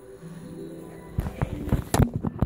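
Soundtrack music playing from a TV. A little past a second in, a quick run of sharp knocks and bumps begins, the loudest near the end.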